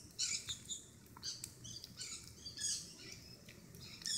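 Faint outdoor ambience: scattered high-pitched chirps recurring throughout, with a few soft clicks in the first second and a half.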